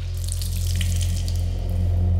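A wet, liquid sound as a hand presses into a soaked fabric chair seat, over a steady low hum that slowly grows louder.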